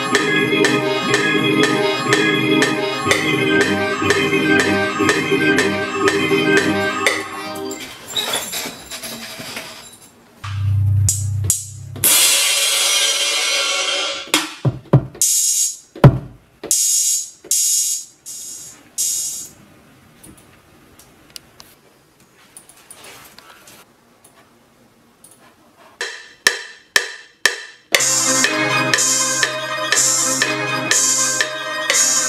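A hip-hop beat being built in FL Studio, played back through the studio speakers: a keyboard melody loop for the first several seconds, then single drum and cymbal samples tried out one at a time with pauses between, then the melody loop again with a bass line near the end.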